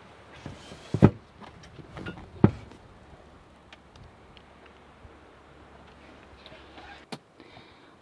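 Two sharp knocks about a second and a half apart, with a few fainter clicks, over a low steady hum that stops near the end.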